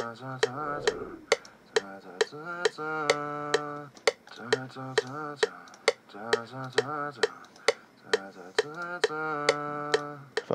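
Heavily auto-tuned sung vocal from a phone voice memo, played back in a loop: each note is held at a flat, steady pitch and jumps to the next. A metronome clicks steadily under it, about two and a half clicks a second.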